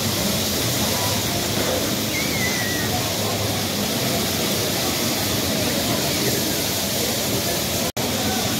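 Steady, even din of a bumper-car rink in use: the electric cars running around the floor, with a babble of voices mixed in.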